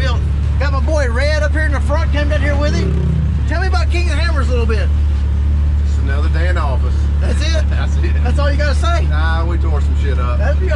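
A man talking over the steady low drone of a side-by-side UTV running, heard from inside its enclosed cab.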